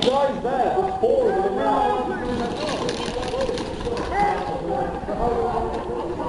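Indistinct voices of several people talking over one another, with a brief rustle of noise about two seconds in.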